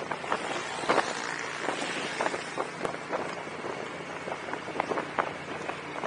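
Wind rushing over the microphone and steady road noise from a Honda Gold Wing motorcycle cruising along a road.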